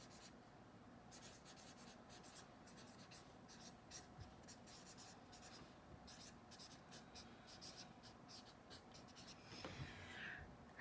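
Faint scratching of a felt-tip pen writing on lined spiral-notebook paper, in a run of short strokes that stops near the end.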